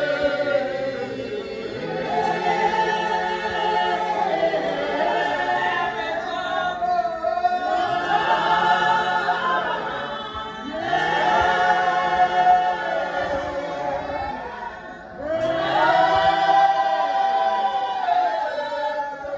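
A small congregation singing a hymn a cappella, with no instruments. The voices move in long held phrases, with a brief drop for breath about fifteen seconds in.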